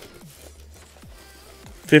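A quiet pause with a steady low hum and faint background music, then a man starts speaking near the end.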